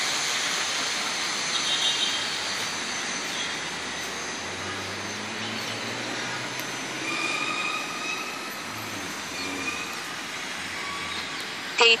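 Quadcopter drone's propellers and motors giving a steady whirring rush, with faint tones that shift in pitch as it flies.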